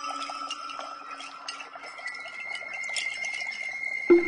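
Water trickling and dripping, heard as many small scattered drops, over held ringing tones of ambient meditation music; a lower tone fades about halfway through as a higher one comes in.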